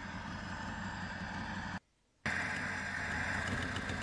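Lada 2105's four-cylinder petrol engine running at idle, steady, with a half-second gap of silence about two seconds in. It is not running properly: the owner blames carburettor trouble, with a throttle plate not opening as it should.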